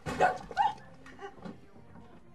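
Two loud, short yelps close together, then two fainter ones about a second later.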